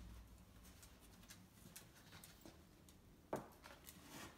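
Faint scuffs and clicks from a Bedlington whippet moving about close to the microphone, with one sharper click about three seconds in.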